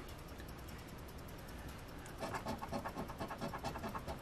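A coin scratching the coating off a lottery scratch ticket: faint at first, then from about halfway in a run of rapid, even back-and-forth strokes.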